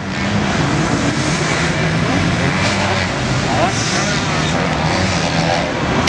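Motocross bikes' engines running hard at high revs, a loud, steady, continuous engine noise as the riders head down the track.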